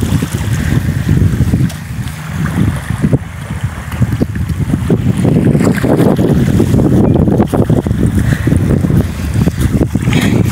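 Wind blowing across the microphone, loud and gusting unevenly, with brief lulls about two and four seconds in.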